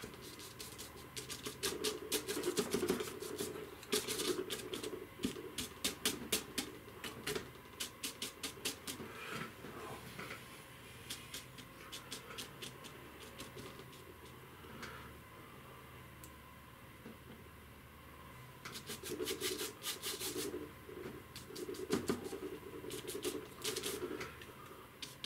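Flat bristle brush dabbing and scrubbing oil paint onto a painting panel: runs of quick taps and scratches, busiest in the first third and near the end, with a sparser, quieter stretch in the middle.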